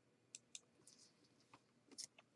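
Near silence: faint room tone with a few soft, short clicks, two close together about half a second in and one near the end.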